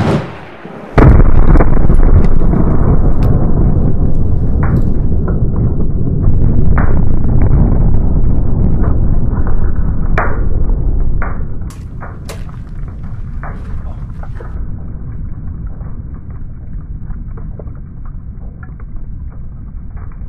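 Replica 17th-century black-powder hand grenade exploding with a sharp bang right at the start. A long, loud, deep rumble follows from about a second in, with scattered cracks and clicks, and it drops to a softer hiss after about eleven seconds.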